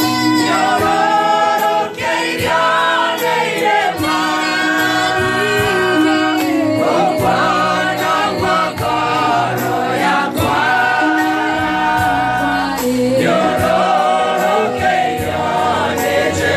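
Gospel singing by a choir over instrumental backing, with a steady percussion beat.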